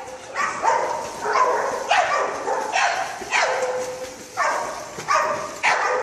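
A dog barking over and over in quick succession, about nine barks roughly two-thirds of a second apart.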